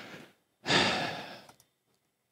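A man sighing: a breath trailing off, then a louder long exhale starting about half a second in and fading out over about a second.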